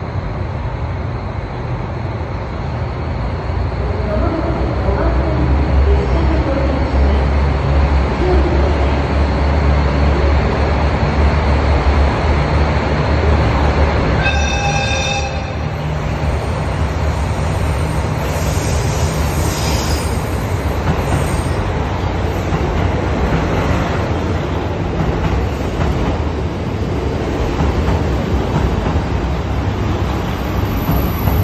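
KiHa 183-5200 series diesel multiple unit pulling in along a platform: diesel engine rumble and rail noise grow as it approaches and rolls past. Its horn sounds once, a short blast of about a second and a half, midway through.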